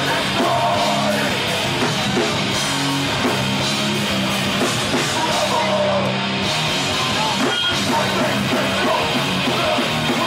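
Hardcore band playing live at full volume, with distorted electric guitars and bass holding low chords over fast drums, without a break.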